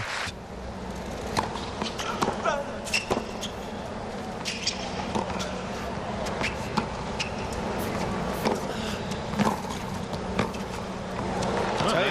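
Tennis rackets striking the ball and the ball bouncing on a hard court, sharp pops about once a second, over a steady murmur of a stadium crowd.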